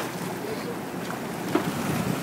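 Boat's engine humming steadily under water rushing along the hull and wind on the microphone, with a single knock about one and a half seconds in.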